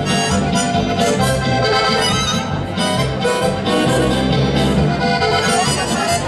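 Oberkrainer folk music played live by a band, a harmonica playing over button accordion and guitar with a steady rhythmic bass.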